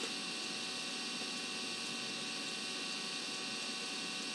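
Steady hiss with a faint electrical hum, unchanging throughout: the background noise of the narration recording, with no other sound.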